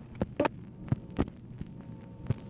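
Steady electrical hum with irregular sharp clicks and pops from an old telephone-call recording on a Dictabelt, the surface noise of the worn recording medium on the open line after the talk has ended. There is one brief garbled sound about half a second in.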